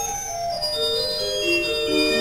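Pipe organ music from the Hildebrandt organ in Störmthal: a few sustained notes held together and moving slowly from note to note in the middle and upper range.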